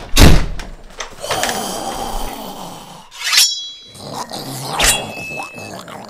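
Horror-style sound effects for a zombie bursting in: a loud bang just after the start, then a creature's growl, followed by two sharp hits with a ringing edge.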